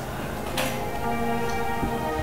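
Background film score of held, sustained chords, with one soft click about half a second in.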